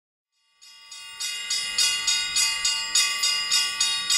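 Orthodox church bells ringing a fast peal, about three strikes a second, the small high bells strongest over tones that ring on; it starts after a moment of silence and builds in loudness.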